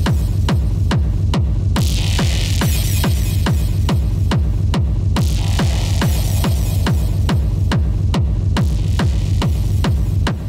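Dark techno music: a steady four-on-the-floor kick drum at about two beats a second over a pulsing bass line, with a hiss in the highs that swells and fades every few seconds.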